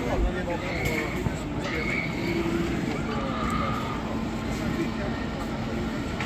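Amusement-park crowd ambience: a steady babble of distant voices with short scattered calls, over a faint steady hum.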